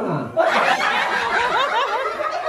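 A short falling vocal slide, then several people laughing with quick repeated bursts from about half a second in.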